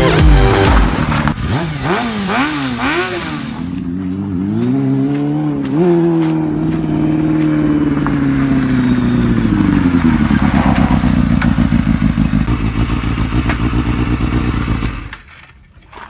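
Motorcycle engine revving up and down in short swings as it rides in, then settling to a steady idle. It cuts off suddenly near the end as the engine is switched off.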